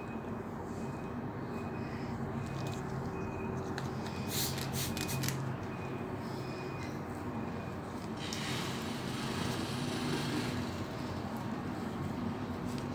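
A damp cloth rubbing dried white clay off skin: a soft rustling wipe, loudest about two thirds of the way in, with a few sharp clicks a little before, over a steady low hum.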